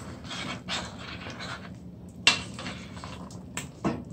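Metal spoon scraping and clinking against a stainless steel pot while stirring a thick stew, with one sharp clink a little over two seconds in.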